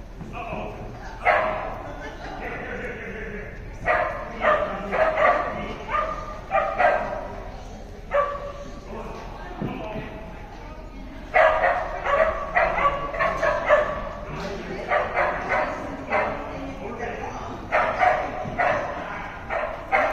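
A dog barking in repeated bursts of several quick barks, with short pauses between the bursts.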